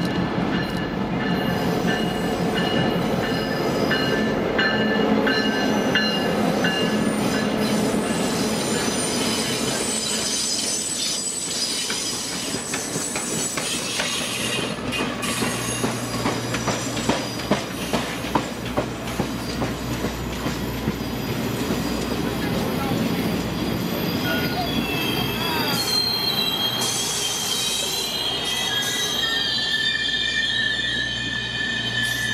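Excursion train headed by F-unit diesel locomotives rolling past, its wheels squealing on the rails with steady high-pitched tones. About halfway through comes a quick run of clicks as the wheels cross rail joints.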